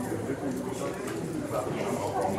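Murmur of several people talking quietly at once, with no single voice standing out.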